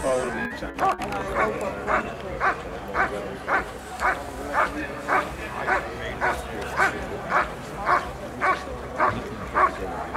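A dog barking steadily in an even rhythm, about two barks a second, starting about a second in.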